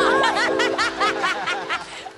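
Several people laughing heartily, with quick repeated ha-ha sounds overlapping, over backing music whose held notes fade out toward the end.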